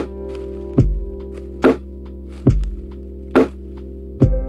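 Lo-fi hip hop beat: a slow drum pattern with a kick and a snare alternating, one hit about every 0.85 s, with faint hi-hat ticks, under sustained soft chords.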